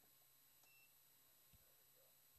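Near silence: faint room tone, with one brief faint high beep a little under a second in.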